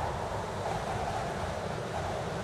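Wind blowing on the microphone: a steady rushing noise, heaviest in the low end, with no distinct events.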